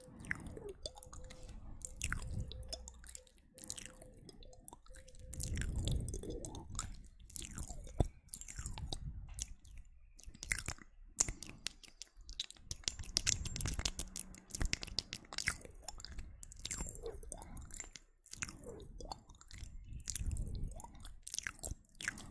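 Close-miked ASMR mouth sounds: a dense, uneven run of wet clicks, smacks and pops, with a few louder low swells in between.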